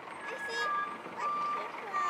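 Electronic beeps from a child's battery-powered ride-on toy Mercedes: one longer higher beep, then a few shorter, lower beeps.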